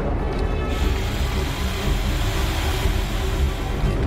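Tense film score playing, with a steady hiss joining about a second in and cutting off suddenly near the end.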